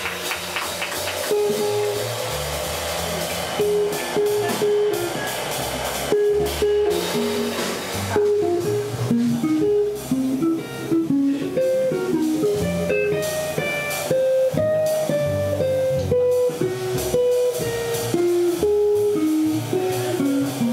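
Small jazz combo playing: an electric guitar solos in single-note lines over upright bass and drums with cymbals.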